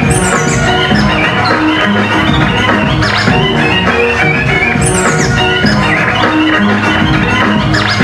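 Hip-hop music played and manipulated live by hand on two vinyl turntables and a mixer over a steady beat. Quick falling pitch sweeps come near the start and again about five seconds in.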